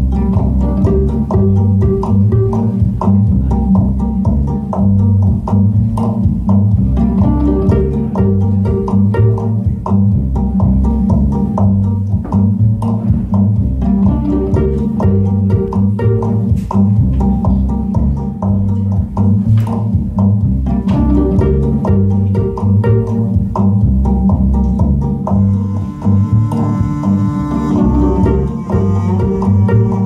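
Upright double bass plucked in a steady rhythmic bass line, with a higher string phrase that recurs every several seconds. Near the end, held bowed string tones come in above it.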